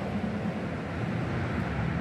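Steady noise of highway traffic, tyres and engines of passing vehicles blending into one even rush that swells slightly toward the end.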